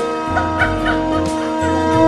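Conch shell (shankha) blown as part of a temple ritual, a steady held tone that swells louder at the end.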